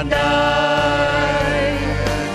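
A worship team of mixed male and female voices sings a Vietnamese worship song into microphones over instrumental backing, holding one long note.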